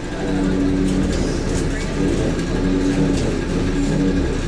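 Steady low engine and road rumble heard from inside a moving vehicle, with indistinct voices over it.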